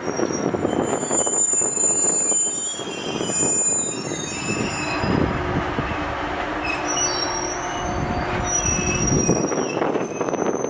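Slow-moving train rolling by, a KuMoYa 143 electric service car hauling 209 series EMU cars, with the steady rumble of wheels on rail and high-pitched wheel squeal that keeps coming and going, thickest in the first three seconds and again near the end.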